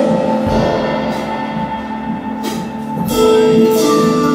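A live band playing: held chords with a few cymbal crashes from a drum kit, swelling louder about three seconds in.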